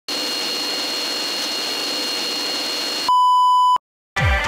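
A steady electronic hiss with two faint high whistling tones, then, about three seconds in, a loud pure beep lasting well under a second that cuts off abruptly.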